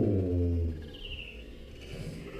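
A man's drawn-out "ooh", falling in pitch and dying away under a second in. Then quiet outdoor ambience with a faint short chirp, like a bird, about a second in.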